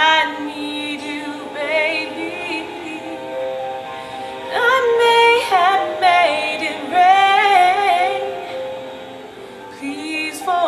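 A woman singing a slow ballad, with long held notes that waver with vibrato, over a soft, steady backing. The singing is loudest in the middle and eases off near the end.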